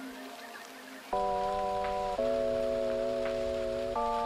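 Lo-fi background music: after a quieter first second, sustained chords come in about a second in and shift to a new chord about two seconds in, over a soft rain-like hiss.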